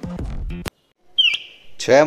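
A fledgling bird, a nestling fallen from its nest, gives one short chirp that falls in pitch, after background music with a beat cuts off suddenly; a voice starts speaking near the end.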